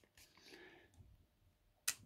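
A single sharp click near the end from the click and ratchet wheel of a brass clock movement being worked by hand while the mainspring is let down, with faint handling noise before it.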